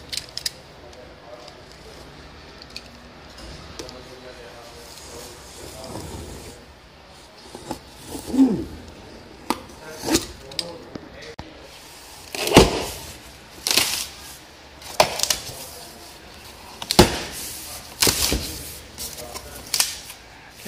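A large cardboard television box being opened and its packing handled. Quiet handling in the first half gives way, a little past halfway, to a run of loud knocks, scrapes and rustles of cardboard and foam packing.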